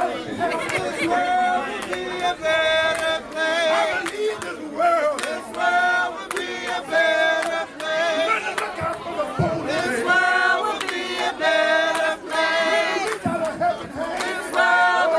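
A crowd singing together without instruments, in short repeated phrases with held notes, to steady hand clapping.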